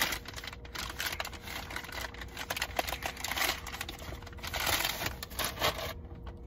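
Black plastic mailer bag crinkling and rustling as it is pulled open by hand and a cardboard box is drawn out of it, in an irregular run of crackles and clicks.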